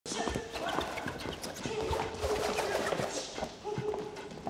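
An irregular run of short, sharp knocks and clicks, several a second, over faint background voices.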